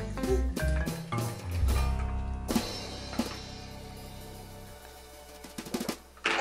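Background music with a drum beat and bass, ending on a held low note that slowly fades out.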